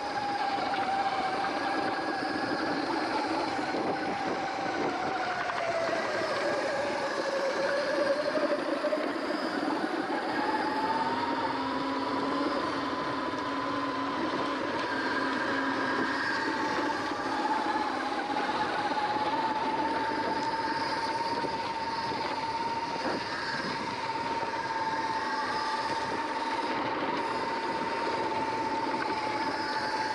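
Electric bike motor whining under way on a dirt trail, the whine dropping in pitch about seven seconds in, climbing back a few seconds later and then holding steady, over a steady rush of tyre and wind noise.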